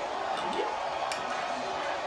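Steady room noise with faint background voices and one light click about a second in.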